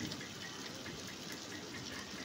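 Butter sizzling steadily in a frying pan as a slice of egg-dipped bread fries into French toast.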